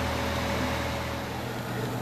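Steady low hum with a faint hiss of background noise and no distinct events; a faint thin tone stops about halfway through.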